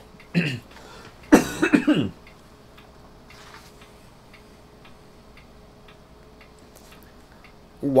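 A man clears his throat once, loudly, about a second and a half in. After that there is a quiet room background with faint, irregular ticks and a low steady hum.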